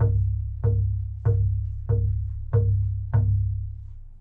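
Knuckles knocking on a wooden picnic table: six evenly spaced knocks about two-thirds of a second apart, each a deep, resonant thud that dies away before the next.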